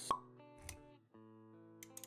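Intro sound design: a single sharp pop just after the start, a softer hit with a low thump a little later, then music with sustained notes coming back in after a brief dip at about one second.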